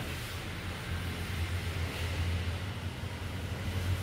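Steady low rumbling background noise with a faint hiss, with no distinct sound standing out.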